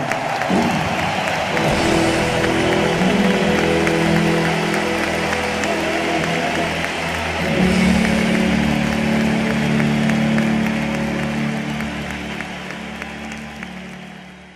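A live rock band holding long sustained chords at the close of a song, with the audience applauding and cheering underneath; the chord changes about seven or eight seconds in, and everything fades out near the end.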